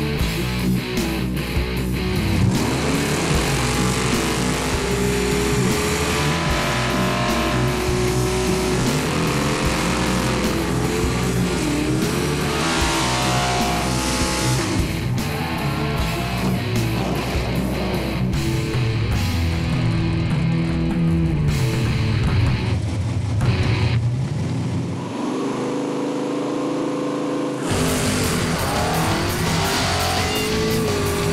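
Nitrous small-block V8 drag cars revving and spinning their tyres in burnouts, with the engine pitch rising and falling, mixed with rock guitar music.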